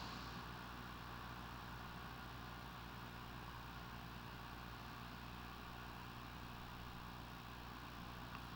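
Faint, steady low hum with a light hiss: the room tone of a quiet church.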